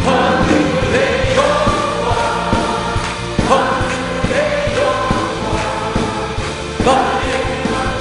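A large congregation singing a Korean hymn together, with a worship band accompanying; drums keep a steady beat under the voices.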